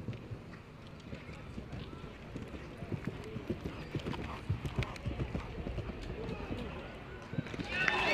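A show-jumping horse's hooves cantering on grass turf, a run of dull uneven hoofbeats that grows stronger partway through. Music and applause start right at the end.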